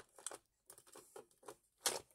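Light clicks and rattles of a clear acrylic storage drawer being slid and handled, with small acrylic charms shifting inside; a sharper knock comes just before the end.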